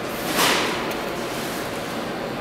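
A short, sharp hiss about half a second in, over the steady rumble of a subway station.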